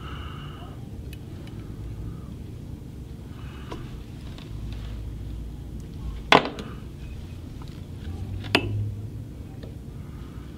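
Quiet handling of fly-tying tools over a low steady hum, with two sharp clicks: one about six seconds in and another about two seconds later.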